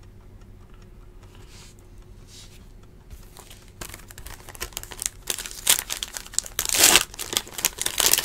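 A trading-card box topper's silver foil wrapper being crinkled and torn open by hand. The first half is quiet handling, then dense crackling starts about halfway in and grows louder near the end.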